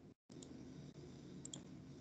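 Faint computer mouse clicks over a low, steady background hum, with a brief cut-out in the sound just after the start.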